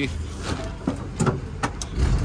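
WWII jeep's four-cylinder flathead engine idling quietly, with several light clicks and knocks in the second half.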